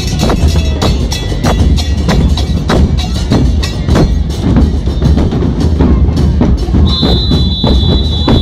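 Murga carnival drumming: large bass drums with cymbals mounted on top (bombos con platillo) beaten in a fast, loud, driving rhythm. A steady high tone sounds over the drums near the end.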